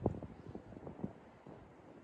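Knife chopping hard cheese on a wooden cutting board: a run of irregular short taps, most of them in the first second.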